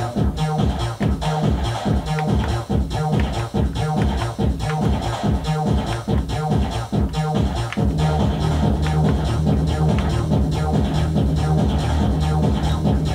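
Roland MC-303 Groovebox playing an electronic drum pattern with a bass line, a steady repeating beat, while its drum sounds are being switched. About two-thirds of the way through, the pattern changes and a fuller, sustained bass comes in.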